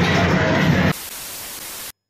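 Loud music-like sound that stops about a second in, giving way to a steady, even static hiss that lasts about a second and cuts off abruptly.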